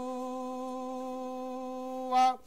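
A male voice holding one long, steady chanted note at a single pitch, part of the Vedic mantra chanting during the abhishek.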